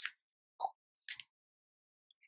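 Near silence broken by three faint, brief pops about half a second apart.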